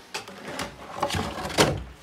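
Handling noise: a few knocks and clunks over a low rumble as the RC car and its plastic body shell are moved about, the loudest knock near the end.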